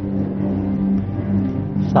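Low, steady droning background music of a TV game show's suspense bed, held on one low pitch.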